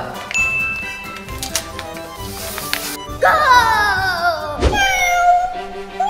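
A cat meowing twice over light background music, the first meow long and falling in pitch, the second drawn out and steady. A short whoosh comes just before the meows.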